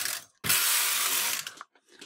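Knitting machine carriage running across the needle bed: a steady mechanical rattle that starts about half a second in, lasts about a second, then fades.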